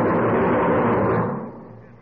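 A dense wash of overlapping voices with sustained music under it, fading away about a second and a half in.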